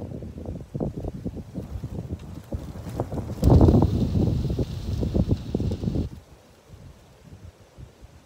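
Wind buffeting the microphone in irregular low rumbling gusts. The gusts are strongest from about three and a half to six seconds in, then drop away abruptly.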